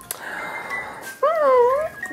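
Bichon Frisé puppy whining once, a short pitched whine about a second in that dips in pitch and then rises again.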